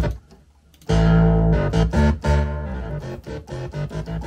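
Electronic keyboard being played: after a short click, a run of notes with a deep bass line and higher tones starts about a second in.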